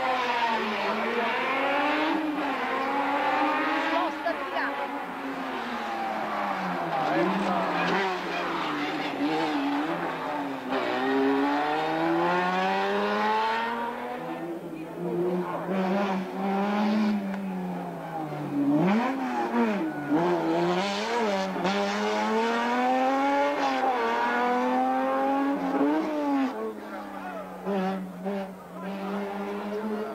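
Open-wheel-style sports-prototype race car's engine driven hard up a hillclimb course: the revs climb through each gear and drop back sharply at every upshift or lift for a corner, over and over.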